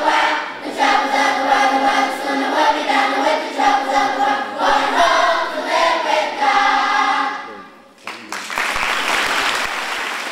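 A children's choir singing. The song ends about eight seconds in and is followed by applause.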